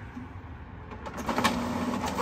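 HP Smart Tank 515 inkjet printer starting up about a second in: its motors run with a steady hum, with a few sharp clicks, as it begins printing its network information page after the information button is pressed.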